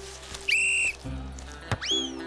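Cartoon sound effects over light background music: a short shrill whistle blast about halfway in, then a kick thud as the corner kick is struck, followed at once by a quick rising slide-whistle glide as the ball flies up.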